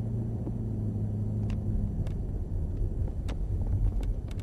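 Cadillac CTS-V's V8 running at low speed, heard from inside the cabin as the car rolls slowly. A steady low hum for the first couple of seconds gives way to a rougher, uneven rumble, with a few light clicks.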